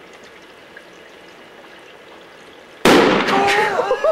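A 2-litre plastic soda bottle bomb of toilet bowl cleaner and aluminium foil bursting with a single sudden loud bang about three seconds in, blown apart by the gas pressure built up inside. Shouts of surprise follow at once.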